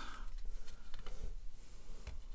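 Panini Prizm basketball cards being flipped through by hand: faint, irregular little clicks and slides of the glossy card edges against each other.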